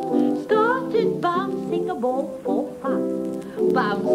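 A children's song sung with vibrato over steady instrumental accompaniment, from an old radio broadcast.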